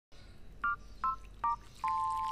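Electronic two-tone beeps like telephone keypad tones: three short beeps about 0.4 s apart, each a step lower in pitch, then a longer held tone beginning near the end.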